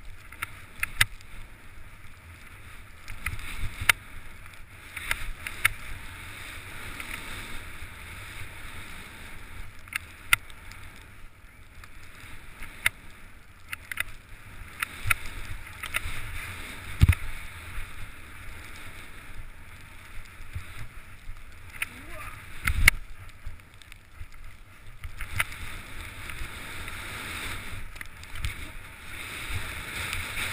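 Skis hissing through deep powder snow, a rush that swells and fades with each turn, dotted with sharp clicks. Two heavier dull thumps come about a third and three quarters of the way through.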